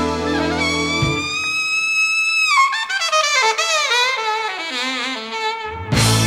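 Alto saxophone playing an unaccompanied cadenza once the band drops out about a second in: a long high held note that bends slightly upward, then a descending run of notes with wide vibrato down into its low register.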